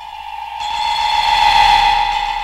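One held musical tone with overtones, swelling steadily louder as the opening note of a 1960s rock single.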